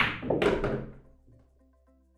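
Pool shot: a sharp clack of the cue and balls striking at the very start, then a second knock about a third of a second in that trails off within a second, with a faint knock a little later. Soft background music plays throughout.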